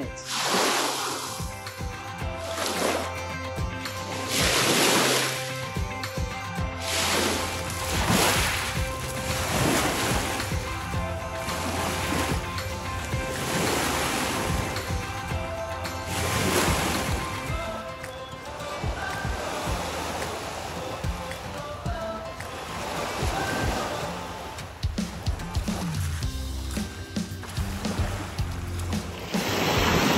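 Background music over small lake waves washing onto a pebble shore, one wash every two to three seconds.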